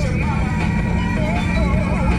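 Steady low rumble of a 4x4 driving along a dirt road.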